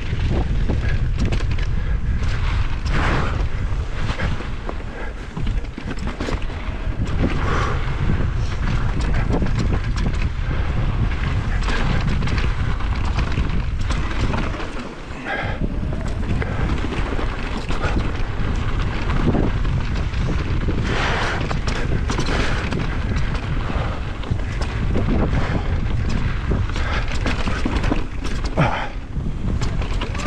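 Wind buffeting the microphone of a camera on a fast mountain-bike descent, with tyres rolling over dirt and rock and the bike knocking and rattling over bumps.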